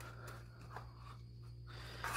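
Faint, soft scraping and pressing of a fork working sticky, moistened bee-pollen paste in a plastic plate, with a few light ticks, over a steady low hum.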